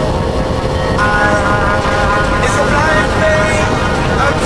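Wind and road noise from a sportbike riding at speed, a steady rushing roar, with a song playing over it whose melody line starts about a second in.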